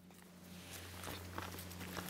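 Faint footsteps on grass fading in, with a few soft scuffs over a steady low hum.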